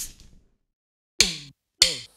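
Two short drum hits about half a second apart, each dropping quickly in pitch and cut off short, opening a cumbia song's intro.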